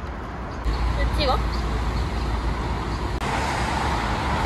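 Road traffic on a busy city street: a steady low rumble of passing cars and buses, growing louder about half a second in.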